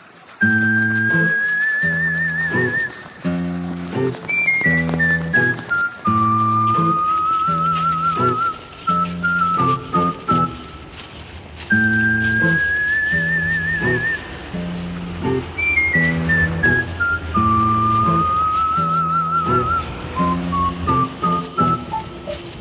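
Background music: a whistled melody with a wavering vibrato over a plucked accompaniment with a steady beat, the same phrase played twice.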